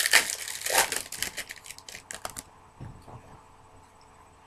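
Crinkling and rustling of a baseball card pack's wrapper and cards being handled, stopping about two and a half seconds in.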